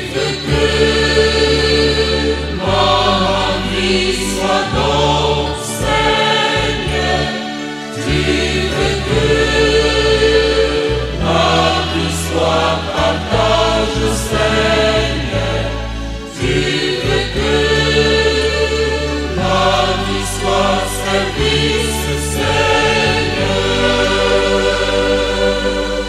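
A church choir singing a religious choral song in sustained, full chords over a bass line that moves in steps every second or two.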